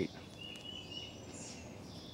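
Quiet background noise with a faint, thin high-pitched chirp or two near the middle.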